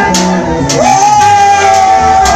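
Live gospel band playing: electric guitar, bass guitar, electronic keyboard and trumpet with a steady beat. A strong high held note slides up just under a second in and is then sustained.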